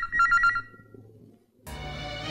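Push-button desk telephone's electronic ringer trilling in a quick two-tone warble, a double ring that stops about half a second in. Film background music comes in near the end.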